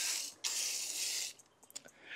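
Water spraying from a garden hose nozzle onto potting mix in a pot: a steady hiss that breaks off for a moment, runs again and is shut off about a second and a half in, followed by a few faint clicks.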